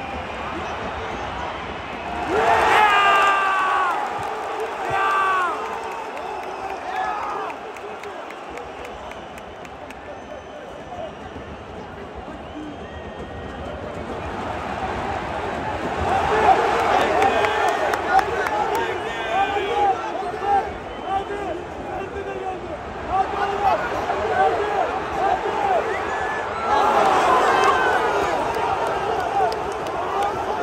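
Football stadium crowd: two loud falling calls a few seconds in, then a quieter stretch before many voices swell into massed chanting and shouting in the stands from about halfway through, loudest near the end.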